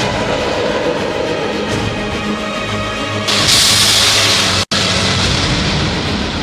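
Dramatic background music with low sustained notes. About three seconds in, a loud rushing roar, the rocket motor of a ship-launched cruise missile, comes in over it and cuts off abruptly about a second and a half later.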